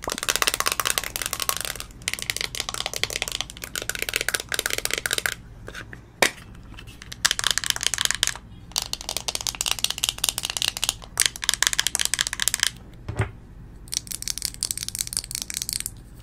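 Long fingernails rapidly tapping and scratching on a plastic makeup compact and its clear plastic lid, in bursts of a few seconds with short pauses between. There is a single sharp click about six seconds in and a dull thump near the end.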